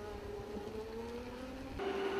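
A homebuilt electric car driving, its motor giving a faint whine that rises and falls a little in pitch; the car is quiet. Near the end the tone changes to a steadier one.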